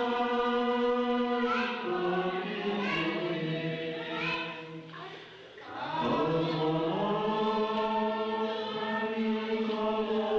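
A group of voices chanting together in slow, long held notes that step up and down in pitch, with a short break about five seconds in before the next phrase starts.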